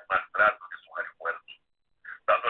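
A person talking over a telephone line: choppy, thin, narrow-band speech.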